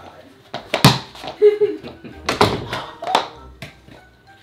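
Four sharp smacks spread over about three seconds, with a man's wordless vocal sounds between them.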